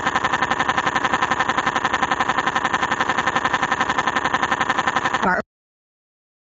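A cartoon child's long, drawn-out crying wail with a rapid, even pulse. It cuts off suddenly about five seconds in.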